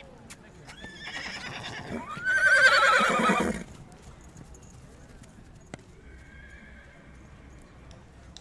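A horse whinnying: one loud neigh that rises in pitch and then wavers with a shaky tremble, lasting about two and a half seconds.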